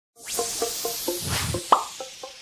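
Electronic intro sting for a logo animation: a quick run of short pitched blips, about four a second, over a steady hiss, ending in a louder rising blip near the end.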